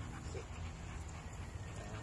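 Pit bull on a leash giving a brief soft whine about half a second in, over a steady low rumble.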